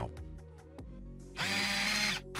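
Soft background music, then about a second and a half in a loud whirring, drill-like transition sound effect with a steady hum beneath it starts suddenly.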